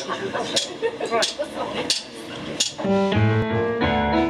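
Voices talking over sharp clicks that come about every two-thirds of a second. About three seconds in, a live blues band kicks in with electric guitar, bass guitar and keyboard.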